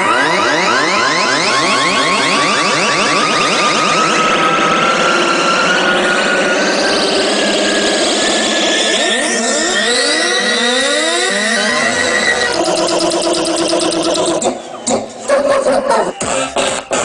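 Electronic dance music build-up: a synth tone rising slowly in pitch over dense, fast-sweeping synth patterns with almost no bass. It breaks into choppy, stuttering cut-outs near the end.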